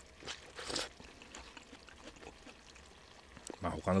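Slurping udon noodles: two short, airy slurps within the first second.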